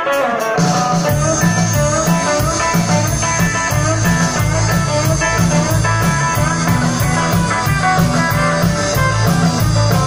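Live band playing electric guitars over bass and drums, with a cymbal keeping a steady beat.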